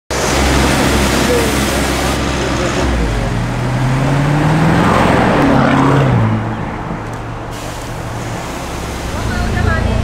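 Lamborghini Urus twin-turbo V8 accelerating hard, its pitch rising steadily for about three seconds before the driver lifts off and the sound falls away. Loud street traffic and engine noise from another car come before it.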